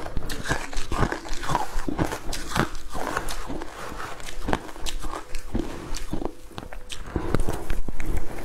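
Crushed ice being chewed with loud, irregular crunches, thinning out in the middle while a metal spoon digs through the dish of ice, then crunching loudly again as a fresh spoonful is bitten near the end.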